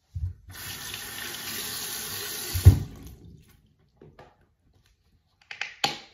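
Bathroom sink tap running for about two and a half seconds, with a loud thump near the end of the flow. A few short clicks and clatters follow near the end.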